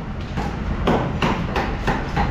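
Blade chopping fish on a wooden block: a run of sharp chops at an uneven pace, about two to three a second, over a steady low market din.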